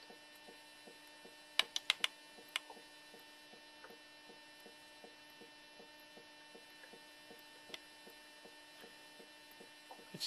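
Faint steady electrical hum with light, rapid ticking underneath. A quick run of four or five sharp clicks comes about a second and a half in, and a single click near the end.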